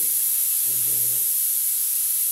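Loud steady hiss of recording noise, strongest in the high pitches, with a man's voice saying a single short word partway through.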